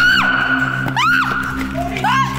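A person screaming in fright: three or four short, high-pitched cries that rise and fall, over a low, steady music drone.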